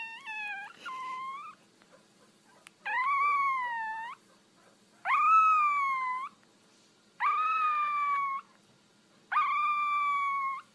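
A small black-and-tan puppy howling: a string of high, drawn-out howls, each lasting about a second, coming about every two seconds, the first couple faint and the later ones louder.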